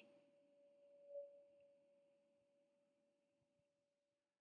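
Near silence with one faint, steady pure tone held throughout, swelling briefly about a second in.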